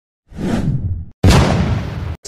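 Two whoosh sound effects for an intro title animation. The first swells up and dies away within about a second. The second starts suddenly, louder, and trails off.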